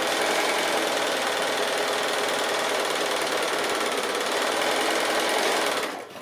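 Bernina sewing machine running steadily at speed, stitching a fabric strip onto a patchwork block, then stopping near the end.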